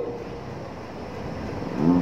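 Steady background noise: an even hiss with some low rumble and no distinct event. A man's voice starts again near the end.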